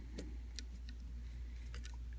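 Faint light clicks of a small screwdriver turning a tiny screw in a plastic action figure's head, a few near the start and a cluster near the end, over a low steady hum.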